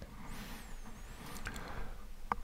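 Quiet room tone on a voice-over microphone, with a faint high-pitched tone that wavers up and down for about a second.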